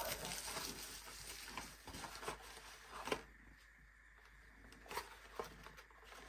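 Plastic bubble wrap faintly rustling and crinkling as it is handled and pushed aside, dying away about three seconds in, followed by a few light taps.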